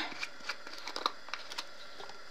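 Caps being unscrewed from small plastic jars of mica powder: a scatter of light clicks and scrapes.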